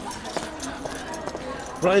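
Footsteps clicking irregularly on a hard street surface while walking, with a low background hum of the street.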